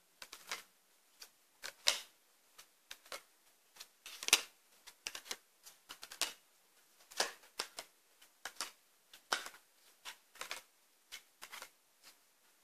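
Tarot cards being dealt from the deck and laid down on a table: irregular light clicks, snaps and slaps, a few each second, the loudest about two seconds and four seconds in.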